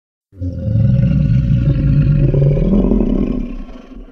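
Tarbosaurus roar sound effect: a deep, loud roar that starts suddenly and holds for about three seconds, then fades out at the end.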